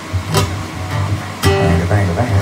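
Steel-string acoustic guitar being strummed: two sharp strums about a second apart, each ringing on into a sustained chord.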